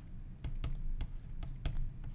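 Pen stylus clicking and tapping on a tablet surface during handwriting: irregular sharp clicks, several a second, over a low steady hum.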